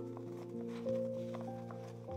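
Quiet background music of held notes that change pitch every half second or so.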